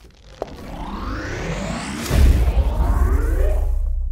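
Cinematic sci-fi sound effect: a rising whoosh that sweeps upward in pitch for about two seconds, then a deep boom that holds as a low rumble.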